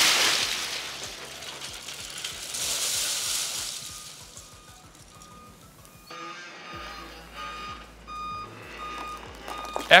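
Oyster and clam shells tipped from a lift-mounted bin, sliding and clattering into a steel roll-off dumpster in two pours, then fading. Quieter short high beeps repeat irregularly in the second half.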